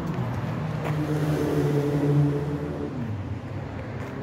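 Motor traffic on the road bridge overhead: a steady engine hum that swells to its loudest a little past halfway, then eases off and drops slightly in pitch near the end.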